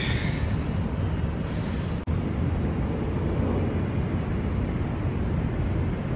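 Steady low outdoor rumble, broken for an instant about two seconds in.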